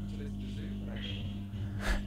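A steady low electrical hum with faint, indistinct speech underneath, and a short louder burst near the end.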